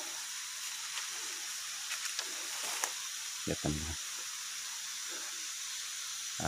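Steady high-pitched drone of a dusk insect chorus in tropical rainforest, with a few light ticks from movement along the forest path.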